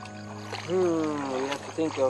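Held notes of background music trail off, then a man's voice starts with a long, falling drawn-out syllable at about half a second in, followed by the first clipped syllables of speech.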